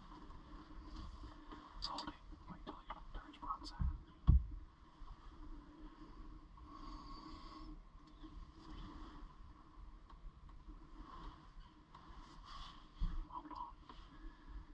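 Quiet inside a small wooden hunting blind: faint handling knocks and clicks, with a short dull thump about four seconds in, the loudest sound, and a smaller one near the end.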